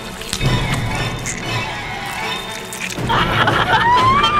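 Dark, scary film-score music with a few sharp hits. About three seconds in, a high, wavering voice rises over the music, crying out.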